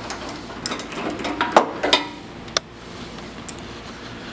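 A wrench and pliers clicking and clinking against a metal bolt and nut while being fitted onto a spring-tension adjuster: several separate light knocks, the loudest about a second and a half in.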